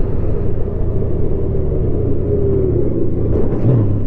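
Honda Gold Wing's flat-six engine running steadily at road speed, under a low rumble of wind and road noise.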